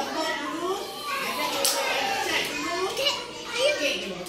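Young children's voices, several talking and calling out over one another, with one short sharp click about one and a half seconds in.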